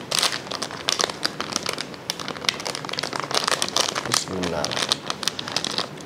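A crinkly plastic snack packet being handled and squeezed in the hands, giving many quick, irregular crackles throughout. A brief murmur of a voice comes a little past four seconds in.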